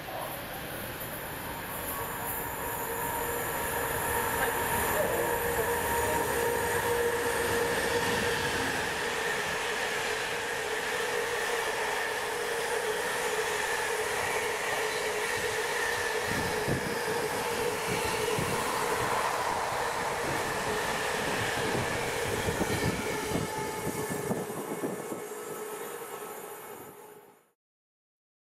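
Intermodal container freight train passing at speed, its wagons running with a steady whine and a rhythmic clatter of wheels over rail joints in the second half. The sound builds over the first few seconds and fades away at the end.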